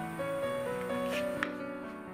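Instrumental background music: a gentle melody of held notes moving step by step, with a short click about one and a half seconds in.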